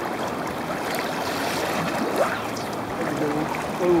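Steady rush of flowing river water, an even noise without breaks.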